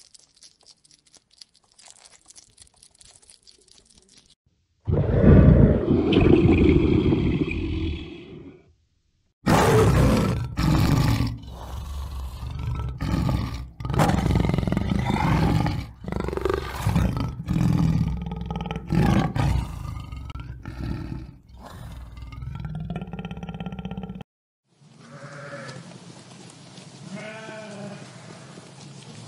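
Faint clicking and rustling of a hedgehog feeding in grass, then a long, loud stretch of tiger growls and roars broken by short pauses, and near the end sheep bleating.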